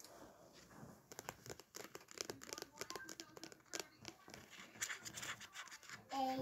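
A quick run of clicks, taps and scratches from fingers handling a plastic tumbler held right against the microphone.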